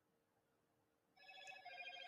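Near silence, then about a second in a faint electronic ringtone starts: several steady tones pulsing on and off.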